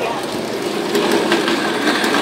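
Model train running along the layout's track as it approaches: a steady rolling rumble with faint clicking.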